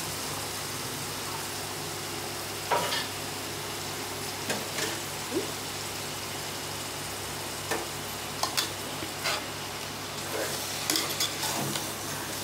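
Chicken pieces frying in an aluminium pot with onions and tomatoes, a steady sizzle. A metal slotted spoon stirs them, clinking and scraping against the pot every second or so.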